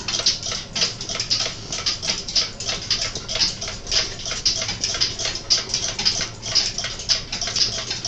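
Circa-1885 billiard clock's movement ticking fast and steadily, several ticks a second.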